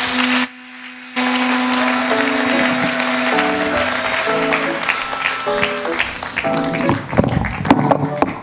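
Applause from a hall full of people. After a brief dip about half a second in, instrumental music with long held notes and a stepping melody comes in, with the clapping still going underneath.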